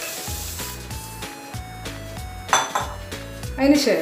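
Background music with steady notes, over which roasted vermicelli is tipped from a plate into a steel pan of milk, a brief rustling hiss near the start.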